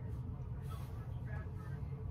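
Faint speech of a telephone caller over a steady low rumble.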